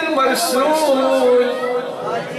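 A man's voice chanting a melodic religious recitation (jalwa) into a microphone, drawing out long, sliding notes.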